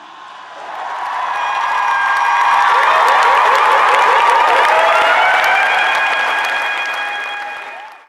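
Audience applauding and cheering: the clapping swells over the first couple of seconds, holds loud through the middle with voices shouting and whooping in it, then fades and cuts off at the very end.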